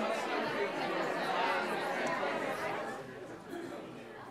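Crowd chatter: many people talking at once in small groups in a large hall, the babble dying down steadily over the few seconds as the conversations wind up.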